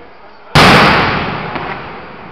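An aerial firework shell bursting with one loud bang about half a second in, the boom dying away over the following second.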